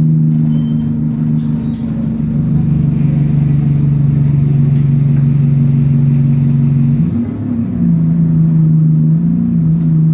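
Bus engine running under steady load, heard from inside the passenger saloon as a steady drone. About seven seconds in the engine note breaks off briefly, then settles again.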